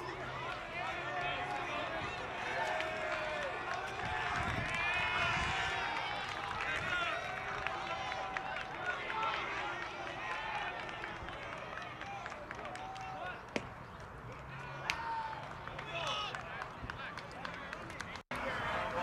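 Several voices calling and chattering at once from around a baseball field, players and spectators, with two brief sharp knocks in the last third.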